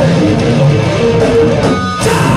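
Thrash metal band playing live, guitar-led, at full volume, with a brief stop in the sound just before the end.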